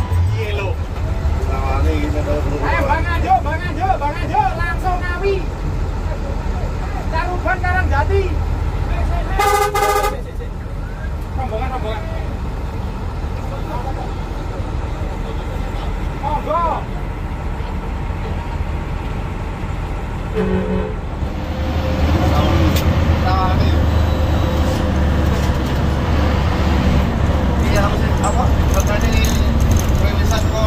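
Inside a Hino AK8 bus: the diesel engine runs steadily, with a short multi-tone horn toot about ten seconds in and a briefer one near twenty seconds. The engine grows louder from about twenty-one seconds.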